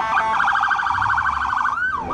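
Police car siren sounding in a fast warble, shifting near the end into a slower rising and falling wail.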